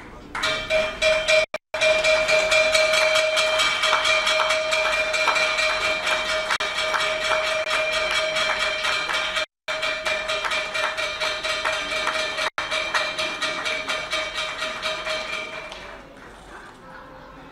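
Stock exchange closing gong ringing with a steady, sustained tone, a lower note and a higher one held together, over hand-clapping applause from the group around it. The sound starts about half a second in and cuts out briefly a few times.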